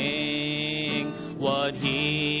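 A man singing a gospel song to his own acoustic guitar, holding one long note for about a second, then starting another sung note near the end.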